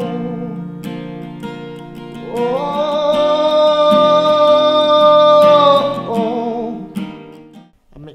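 A solo voice singing over a strummed acoustic guitar. Partway in the voice rises to one long held note, which wavers as it ends, and the song dies away just before the end.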